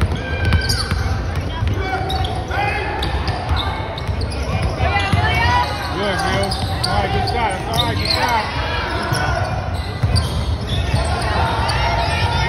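Basketball game sounds in a gym: a basketball bouncing on the hardwood court amid many voices of players and spectators calling out and talking, echoing through the large hall.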